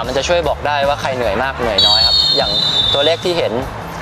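A person talking over a steady low hum, with a thin high tone sounding for about a second in the middle.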